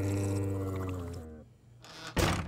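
Cartoon snoring sound effect: a long, low, drawn-out snore that sounds strangely like a dying buffalo. It dies away about a second and a half in.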